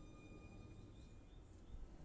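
Near silence: room tone, with a faint steady high tone that fades out about halfway through.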